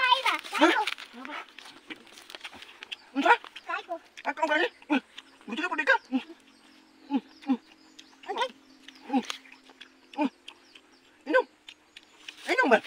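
Short, separate vocal calls and exclamations from people, a few every couple of seconds, over a faint steady hum.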